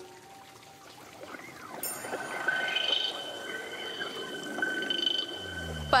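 Magical water-power sound effect: soft watery trickling with a shimmering high tone held over it, building from about two seconds in.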